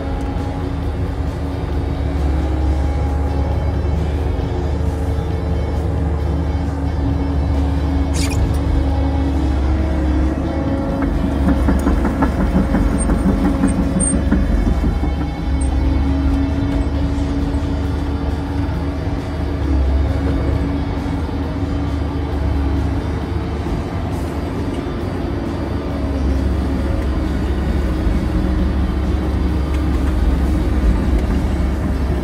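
Diesel engine and hydraulics of a Kobelco SK115SRDZ excavator running steadily, heard from inside its cab while it pushes snow, the engine note shifting now and then with the load, with a sharp click about eight seconds in. Music plays over it.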